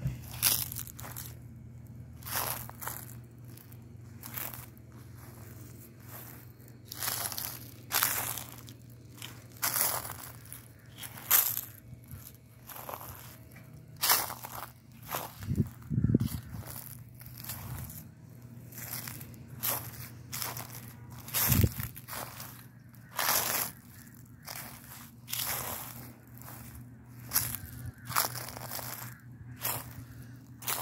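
A sneaker stepping on and crushing dry leaves on grass: a long run of crisp crunches at irregular intervals, a few seconds apart or closer.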